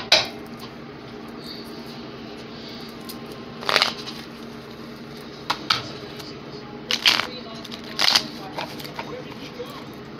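Construction noise in the background: a steady machine hum with about five sharp knocks or bangs at irregular intervals.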